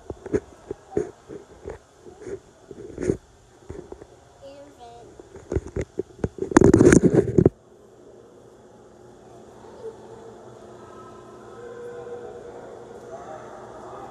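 Phone handling noise: irregular knocks and rubs against the microphone as the phone is moved and set down, with a loud rustle about seven seconds in that cuts off suddenly. After it, the steady low hum of a large indoor room with faint distant voices.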